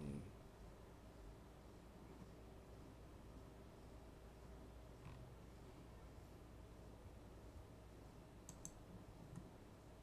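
Near silence: quiet room tone with a few faint computer mouse clicks, one about halfway through and two close together near the end.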